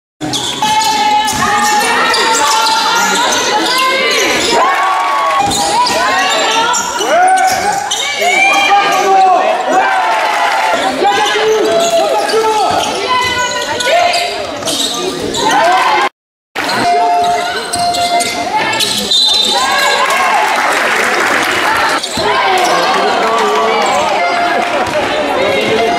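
Basketball game sound in a gym: the ball bouncing on the court amid players' and spectators' voices calling out. The sound drops out for a moment about sixteen seconds in.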